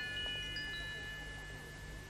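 Faint bell-like chime tones: a few high notes enter one after another in the first second, then ring on together and slowly die away.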